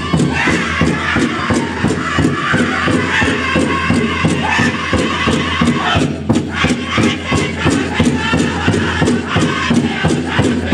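Pow-wow drum group performing a fancy shawl contest song: a large shared drum struck in a steady, even beat, with high-pitched group singing chanted over it. The singing breaks off briefly about six seconds in, then resumes over the drum.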